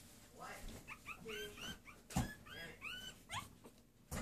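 Newborn puppies whimpering while nursing: a quick series of short, high squeaks, each rising and falling in pitch. About halfway through there is a single sharp knock, the loudest sound.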